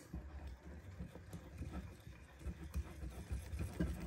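Wire whisk beating thick batter in a glass bowl: a quick, uneven run of faint taps and wet stirring.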